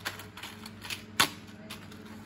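A few short, sharp clicks at irregular intervals, the loudest a little past halfway, over a faint steady low hum.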